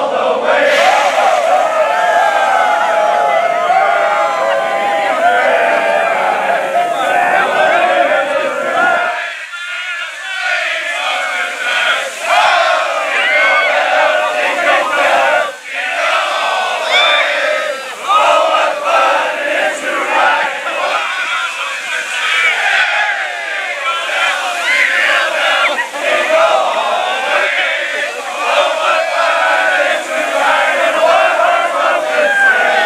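A large crowd of men shouting, whooping and cheering all at once while being drenched by a fire truck's water spray.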